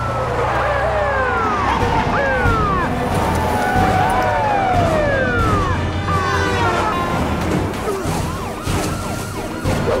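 Several police sirens wailing at once, their pitches sweeping up and down and overlapping, over the low rumble of car engines. A few sharp knocks come in the last few seconds.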